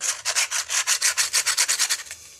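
Abrasive sanding pad rubbed rapidly back and forth over steel nails and fencing staples, giving a quick run of even, hissy scratching strokes, about ten a second.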